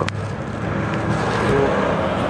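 A short click, then a steady rushing background noise that swells a little about a second in.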